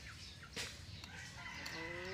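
A chicken clucking, with drawn-out calls in the second half, and one sharp click about half a second in.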